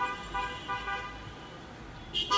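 Car horns tooting in a run of short honks, thickest in the first second and then trailing off into a fainter held tone, over the low rumble of a car driving slowly past.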